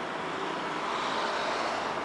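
Steady road-traffic noise, swelling slightly about a second in as a vehicle passes.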